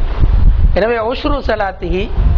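Speech only: a man lecturing into a microphone.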